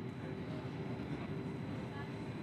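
Electric passenger train running, heard from inside the carriage: a steady low rumble of wheels and running gear on the track.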